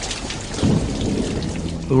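Steady rain with a low rumble of thunder that swells about half a second in and falls away.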